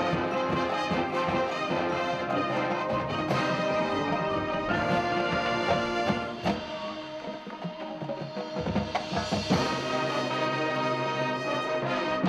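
High school marching band playing: massed brass over percussion. The band drops to a softer passage a little past the middle, then comes back in full.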